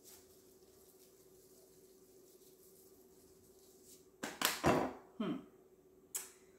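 Quiet kitchen room tone with a steady low hum. About four seconds in comes a short, loud clatter of a spice shaker being handled while seasoning is sprinkled onto the kale.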